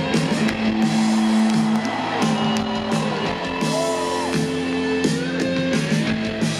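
Rock band playing live: the instrumental intro of a song, with repeating sustained guitar notes over drums and cymbals, heard from within the festival crowd, with a few audience whoops.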